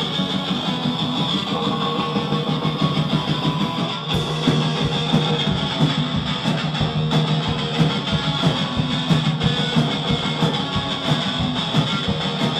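Hardcore punk band playing live: a distorted electric guitar riff, joined by drums with a steady beat about four seconds in.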